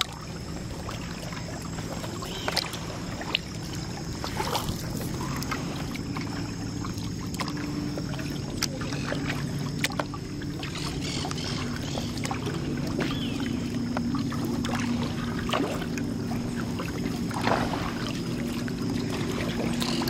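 Kayak paddling: the double-bladed paddle dipping and dripping water, with sharp splashes and taps every second or two, over a steady low hum that grows louder in the second half.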